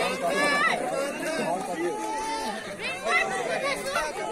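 Many overlapping voices of a crowd of spectators and players talking and calling out, with no single speaker clear.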